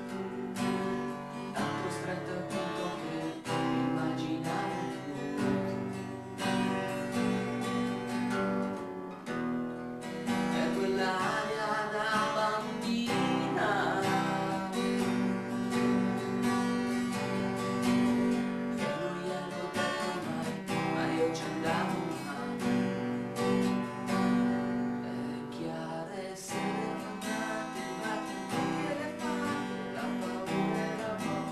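Cutaway acoustic guitar played solo, a continuous run of chords and picked notes.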